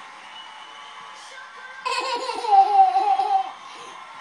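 A toddler laughing: after a quiet stretch, one long, high, wavering peal of laughter about two seconds in, sliding down in pitch as it goes.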